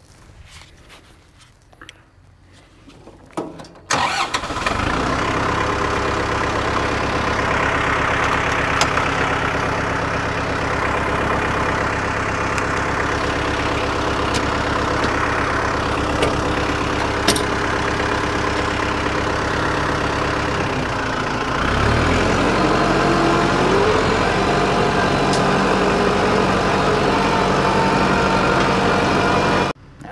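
New Holland WorkMaster 55 tractor's diesel engine starting about four seconds in and settling into a steady run. Some seconds past halfway the engine speed rises, with a climbing pitch, and it runs a little louder and faster from then on.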